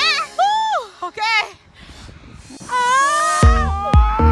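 Excited laughing and squealing voices, then a short lull. Edited-in background music follows, with a long rising synth line and a steady bass beat that comes back in near the end.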